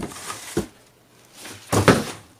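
Cardboard boxes being handled and knocked about, with a short knock about half a second in and a louder thump near the end as boxes fall.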